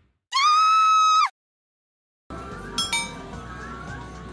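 A steady electronic tone, held for about a second and cut off sharply, used as an edited-in sound effect; then a second of silence. Arcade background noise follows, with a few bright metallic clinks and chimes near the end.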